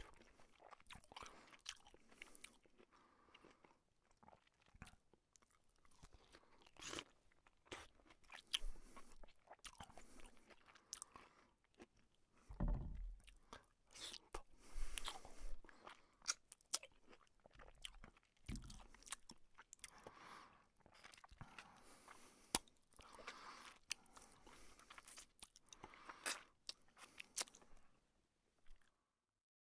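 A person chewing and eating by hand, close to the microphone: irregular wet mouth clicks, smacks and crunches, with a low thump about halfway through.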